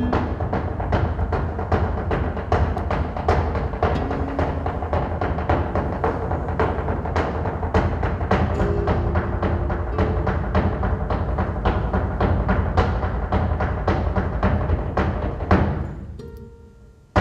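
Flamenco footwork: rapid, uneven strikes of heeled shoes stamping on a stage floor, with a deep, booming resonance under them, dying away near the end.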